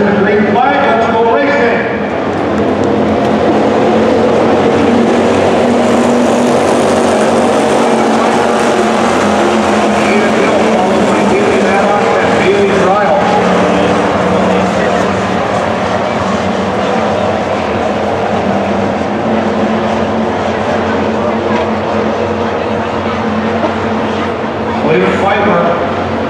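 Several slingshot race car engines running hard as the small cars lap a dirt oval. Their pitches rise and fall as they accelerate and pass.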